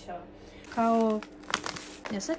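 Plastic food packaging crinkling and rustling as packets of groceries are handled, loudest in the second half.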